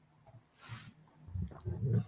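A short breathy hiss about half a second in, then low, indistinct vocal sounds from a man, much quieter than the conversation before it.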